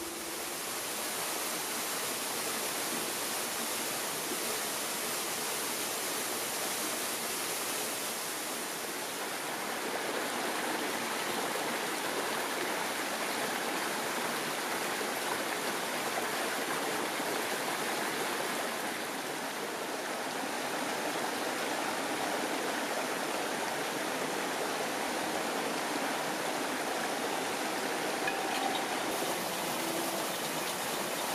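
Mountain stream running over rocks and small cascades, a steady, even rush of water.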